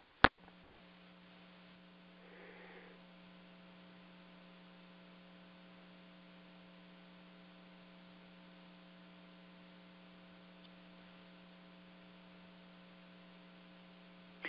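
A sharp click just after the start, then a faint, steady electrical mains hum on the meeting's audio line, one low pitch with a few fainter overtones, holding unchanged.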